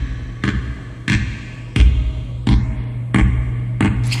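Heavy thuds at an even walking pace, about three every two seconds, over a steady low electronic hum.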